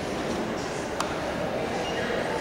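Steady low rumble of background noise in a large indoor arena, with one sharp click about a second in.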